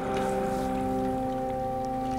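Water scooped and poured by hand over a person's head into a baptismal font, splashing and trickling, over a steady held chord of background music.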